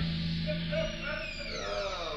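Closing moments of an alternative rock demo track: a held low note, then several tones sliding downward in pitch together as the song ends.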